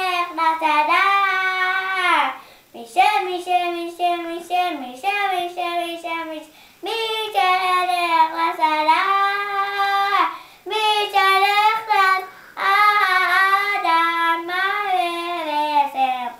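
A young boy singing, a string of sung phrases of held notes with short breaks for breath between them.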